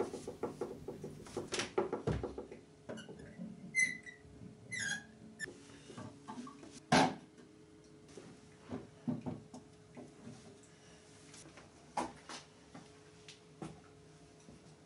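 Wooden-framed railway clock being handled and hung on a wall: scattered knocks and scrapes with a few short squeaks, and one louder knock about seven seconds in.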